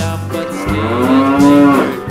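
A single long, drawn-out animal call, rising slightly in pitch, over a nursery-rhyme music track.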